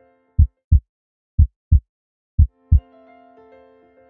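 Heartbeat sound effect: three low double thumps, lub-dub, about a second apart. Soft keyboard music comes back in after the last beat.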